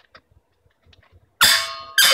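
Two ringing metal clangs, one about a second and a half in and another at the very end, from the steel valve protection cap striking against a hydrogen gas cylinder as it is fitted.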